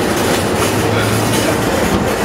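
Loud, steady rumbling noise with hiss, without speech.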